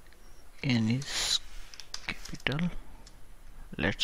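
A man's short voiced sounds, hesitation-like, with speech starting near the end and a few faint computer keyboard clicks in between.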